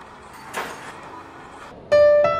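A soft outdoor hiss with two brief rustling swells, then piano music comes in near the end.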